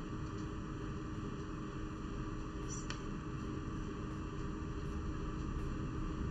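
Steady background hiss with a faint electrical hum, and no distinct sound event.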